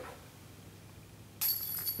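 A putted disc hits the metal chains of a disc golf basket about one and a half seconds in. The chains jingle and ring as the putt drops in.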